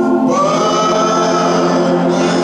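Group of voices singing a slow gospel song, holding long notes, with a higher voice sliding up into a held note about a quarter second in.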